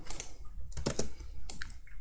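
A few separate keystrokes on a computer keyboard, typed while adding a node in Blender.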